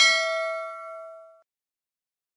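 A single notification-bell ding sound effect, one bright struck chime that rings and fades away within about a second and a half.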